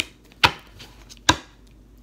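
Two sharp knocks on a table, a little under a second apart, from handling a tarot deck.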